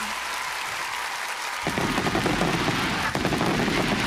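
Studio audience applause at the end of a song. About a second and a half in it turns suddenly louder and denser, with a low rumbling crackle.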